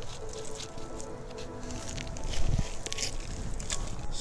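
A plastic nursery pot being handled and the potted tree slid out of it: rustling and knocking that grows louder with a dull thump about halfway through. Faint steady tones sit underneath.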